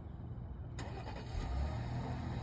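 A 2023 Jeep Grand Cherokee L's engine starting by remote start. The starter engages a little under a second in, and the engine catches about a second and a half in and settles into a low idle.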